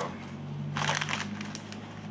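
Crinkling of a foil potato chip bag (Lay's Classic) being grabbed and handled, strongest about a second in.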